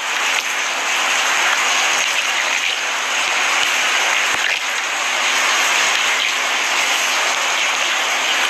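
Steady outdoor street noise, a continuous hiss like passing traffic, with a constant low hum underneath.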